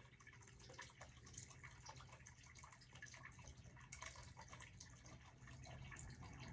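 Near silence: room tone with a faint steady low hum and a few faint small ticks.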